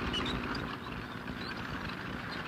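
A tank running: a steady low rumble with a rapid rattle, at moderate level.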